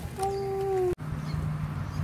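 A person's voice holding one drawn-out note that falls slightly in pitch, cut off suddenly about a second in. After it comes a low steady hum.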